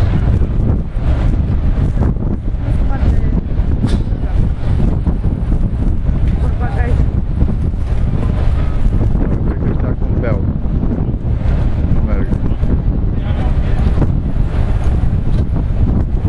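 Wind blowing on the microphone, a steady low noise throughout, with faint voices now and then.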